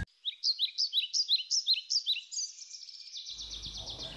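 A songbird singing a run of quick, high, downward-sweeping chirps, about four a second, breaking into a faster trill past the halfway point.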